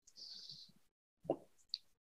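Near quiet pause with only faint small sounds: a soft hiss early, then a brief soft pop and a tiny click in the second half.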